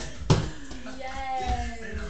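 A toy ball dropping through a toddler's basketball hoop and hitting the wooden floor once with a sharp thud. About a second later comes a drawn-out voice that falls slightly in pitch.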